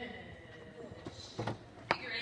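Indistinct voices with a few sharp knocks, the loudest just before the end.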